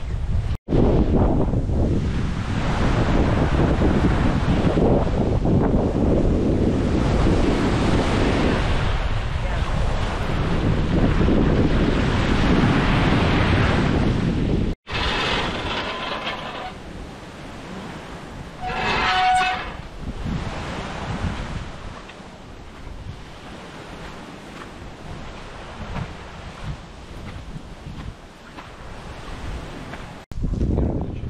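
Wind buffeting the microphone, loud and steady, which stops at an edit about 15 seconds in. After it, quieter outdoor ambience with one short pitched call a little before 20 seconds.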